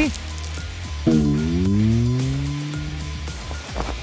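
Background music, and about a second in a woman's drawn-out whimper lasting about two seconds, its pitch sliding, as she shivers in the cold.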